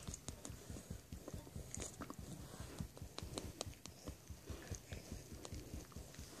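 Faint, irregular crunching clicks, several a second, of a young pet chewing its food.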